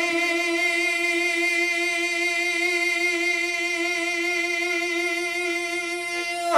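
Unaccompanied male voice singing an Islamic devotional song, holding one long, steady note with a slight vibrato.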